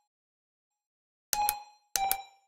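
Bell-like metallic dings, each a quick double strike ringing at one pitch: one about a second and a half in, another starting at the very end, the beginning of a steady beat that opens a music arrangement.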